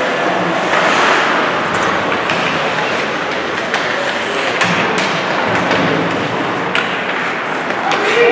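Ice hockey play in a rink: steady scraping and clatter of skates and sticks on the ice, with a few sharp knocks of puck or sticks, under spectators' voices.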